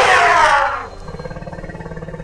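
Loud animal roar sound effect from a cartoon, with the pitch falling, which breaks off just under a second in. A quieter, evenly pulsing low sound follows and fades.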